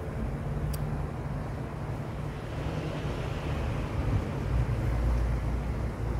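Steady low outdoor rumble of background noise, with a single short click a little under a second in and the rumble growing somewhat louder in the last couple of seconds.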